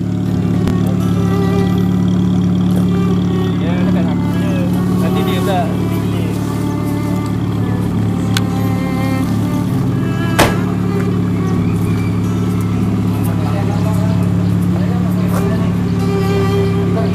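A car engine running steadily close by, with people talking over it, and a single sharp knock about ten seconds in.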